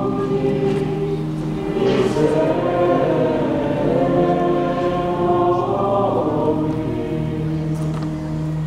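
A choir singing in a church, several voices together in a sung liturgical piece.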